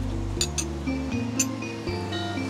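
Background music with steady held notes and a shifting bass line, with a couple of light clinks, a spoon against a small bowl, about half a second and a second and a half in.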